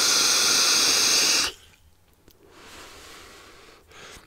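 Eleaf Ello Pop sub-ohm tank on an iStick Mix mod being fired at around 80 watts while drawn on: a steady hiss of air pulled through the airflow and over the coil, which stops sharply about one and a half seconds in. After a short gap comes a softer, breathy exhale that lasts about a second and a half.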